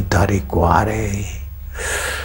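A man speaking for about a second, then a sharp, audible intake of breath through the mouth near the end.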